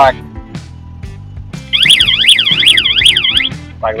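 Warning siren of a 4x4 self-loading mobile concrete mixer sounding a fast up-and-down electronic warble, about four sweeps a second, for nearly two seconds from about halfway in. It is an alert from the machine signalling a fault condition.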